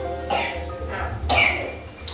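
Children's voices: two short, breathy vocal sounds about a second apart, the second louder, over a low steady hum.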